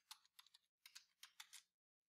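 Faint, quick keystrokes on a computer keyboard as a password is typed, stopping shortly before the end.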